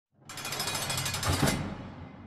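Intro sound effect: a dense, rapid rattling burst that starts just after the beginning, swells to its loudest about a second and a half in, then fades away.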